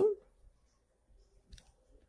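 Pencil tip on lined notebook paper: one faint, short click about a second and a half in, with near quiet around it.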